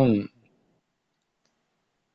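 A man's voice trails off in the first quarter second, then near silence: room tone, with a faint tick about one and a half seconds in.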